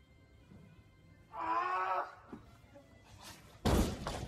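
A heavily loaded barbell with bumper plates crashes to the gym floor near the end, a sudden loud impact, as the lifter collapses under it, which looks like him passing out mid-lift. A short strained voice is heard about a second and a half in.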